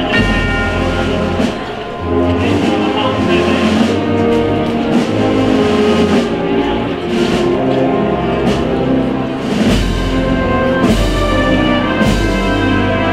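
Spanish wind band (banda de música) playing a slow processional march, with sustained brass and woodwind chords over a low bass line and a drum stroke about once a second.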